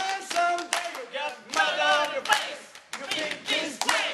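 A group of voices singing together, with hand claps striking at uneven intervals.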